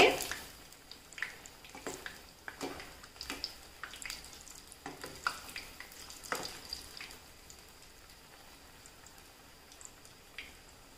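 Chana dal vadas deep-frying in hot oil, sizzling faintly, with light clicks and scrapes of a metal slotted spoon against the pan as the fritters are turned, mostly in the first seven seconds.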